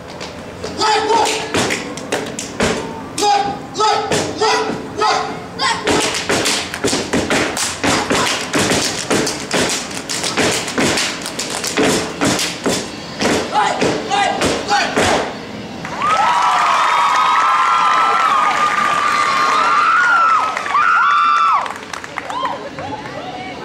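Step team stepping: rapid stomps, claps and body slaps in a rhythmic routine with shouted calls. About sixteen seconds in the stepping stops and loud, high-pitched voices scream steadily for about five seconds.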